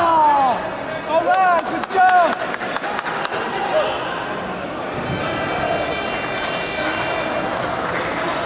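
Loud shouts of encouragement from coaches or spectators during judo groundwork. Short cries fall or rise-and-fall in pitch in the first two seconds, followed by a quick run of sharp impact sounds.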